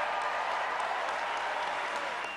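Large convention crowd applauding steadily.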